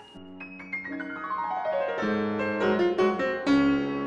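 Short piano jingle: a quick downward run of notes left ringing into one another, then fuller chords from about halfway through.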